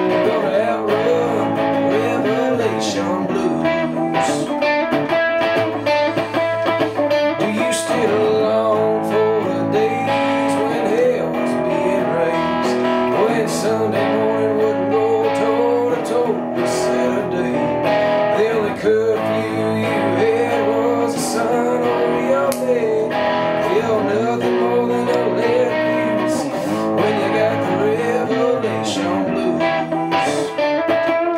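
Epiphone semi-hollow electric guitar played through an Orange amplifier: a bluesy instrumental passage of strummed chords and picked lines, with notes bent up and down.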